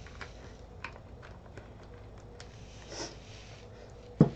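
Quiet handling sounds: a few faint, light clicks and taps as hands work with a small paint bottle and a gel printing plate, with a soft rustle about three seconds in.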